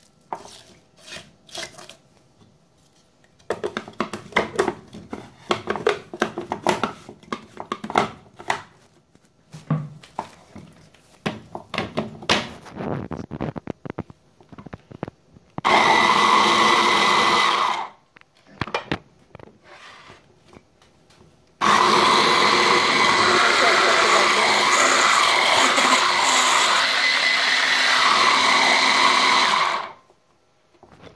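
Small electric chopper's motor running in two bursts as it chops cabbage coarsely: a short burst of about two seconds, then a longer run of about eight seconds that cuts off abruptly. Before that, pieces of cabbage are dropped into the plastic chopper bowl with scattered clicks and rustles.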